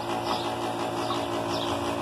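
A steady motor hum holding one even pitch throughout.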